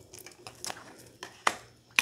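Small paper slips being handled, a few soft crinkles and crisp ticks, the sharpest about one and a half seconds in.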